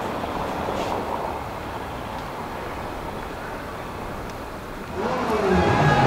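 Steady outdoor noise haze of street and crowd. About five seconds in, the G-Power-tuned BMW M3 GTS's V8 comes in much louder, its pitch rising and falling as it revs.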